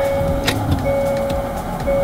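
A 2020 Hyundai Santa Fe being switched on: a steady electronic tone, broken by two short gaps, over an even rush of engine and fan noise.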